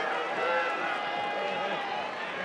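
Arena crowd noise: many voices shouting and talking over each other in a large hall.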